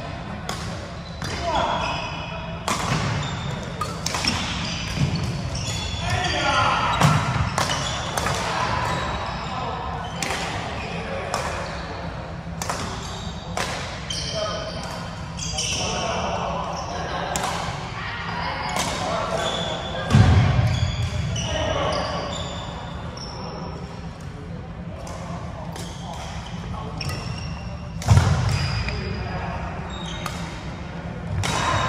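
Badminton rally: repeated sharp cracks of rackets striking the shuttlecock, with sneakers squeaking on the wooden court floor, all echoing in a large hall. Two heavier thuds land about two-thirds of the way through and near the end.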